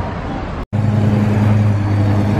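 Street traffic noise, cut off suddenly about two-thirds of a second in. It is followed by a Lamborghini Gallardo's V10 engine running with a steady low drone.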